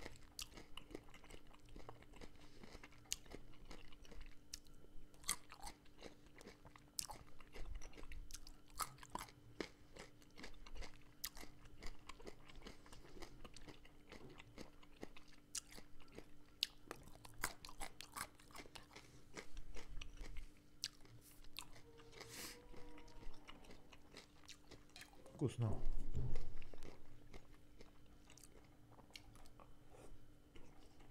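Close-up chewing and crunching of beetroot and carrot slices eaten by hand, with many sharp mouth clicks. About 26 seconds in, a louder, lower sound from outside the room briefly stands out.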